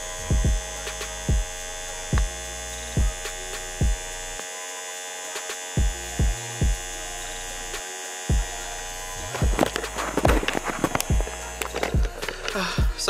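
A small USB-powered handheld vacuum pump running with a steady electric hum as it slowly draws the air out of a vacuum storage bag, with short low thumps about once a second. Near the end, rustling and handling noise.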